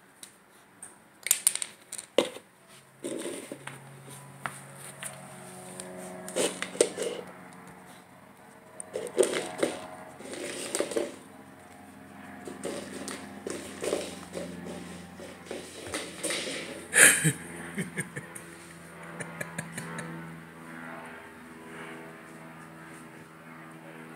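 Upturned plastic cup being nosed and shoved about on a hardwood floor by a border collie puppy: irregular clatters, knocks and scrapes, the loudest knock about 17 seconds in.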